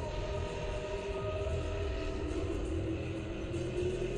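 Cinematic drone: a steady low rumble under a sustained, unchanging chord of held tones. It does not pulse or stop, and it swells slightly near the end.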